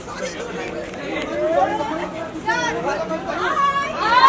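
Chatter of several people talking over one another in a crowd, with a louder voice rising near the end.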